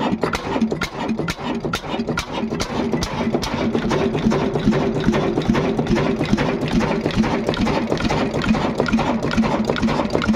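Old Ruston Hornsby stationary diesel engine running steadily, with sharp regular ticks about three times a second.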